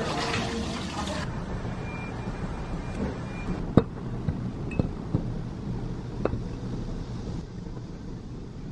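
Peeled cherry tomatoes placed one at a time into a glass jar, giving a few light, sharp taps against the glass; the sharpest comes about four seconds in. These play over a low steady hum, and a hiss in the first second stops abruptly.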